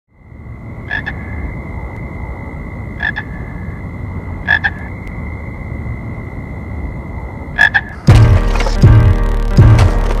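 Four short croak-like calls a few seconds apart, over a steady high whine and a low rumble. About eight seconds in, a hip-hop beat with heavy bass kicks starts.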